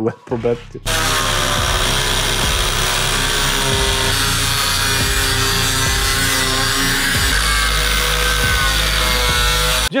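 Angle grinder cutting into the steel of a Władimirec T-25 tractor cab's rear window frame. It spins up about a second in, runs steadily under load, and stops abruptly just before the end.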